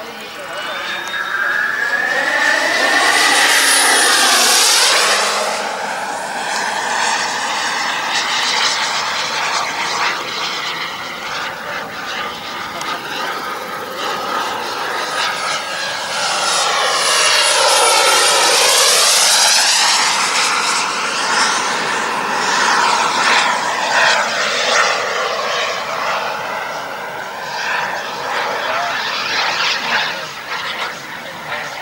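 The 14 kg-thrust Kingtech turbine of a radio-controlled Predator jet running at speed as the model flies past overhead. Its whine and jet rush swell and fade with a sweeping, phasing sound. The two loudest passes come a few seconds in and again just past the middle.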